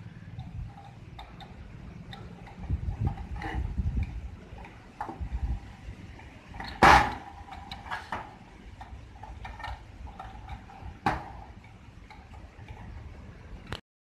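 Small metal gearbox being handled on a sheet-metal bench: scattered light clicks and knocks of metal parts, the sharpest about seven seconds in and another about eleven seconds in, with a low rumble of handling a few seconds in.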